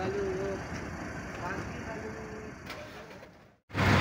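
Roadside traffic ambience picked up by a phone's microphone: a steady low rumble of vehicles with a few faint brief notes. It cuts off abruptly near the end, and a man's voice starts right after.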